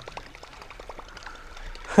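A topwater musky lure being reeled in right up to the boat: a quick run of light, evenly spaced clicks for about the first second, over water splashing and trickling.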